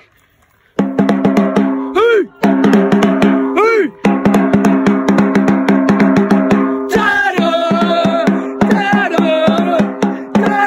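A supporters' drum beaten rapidly with a soft mallet, starting about a second in. Voices hold notes over the drumming. From about seven seconds in, singing voices join the beat.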